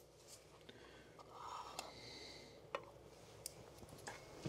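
Near silence: faint room tone with a soft rustle about a second in and a few light clicks of small handling.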